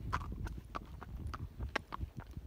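A Tennessee Walking Horse's hooves striking a gravel road at a walk: an uneven series of sharp clip-clop footfalls, several a second.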